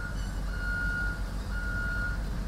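Reversing alarm on road-construction machinery, a single steady tone beeping about once a second, each beep a little over half a second long, over a low engine rumble.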